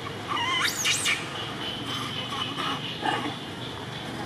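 Long-tailed macaque giving one short, high squeal under a second long, its pitch rising and swooping up and down, near the start.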